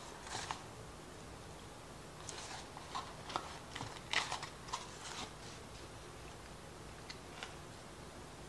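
A person chewing lemon pepper fries: a string of short, irregular crunches and mouth clicks, most of them in the middle few seconds, thinning out near the end.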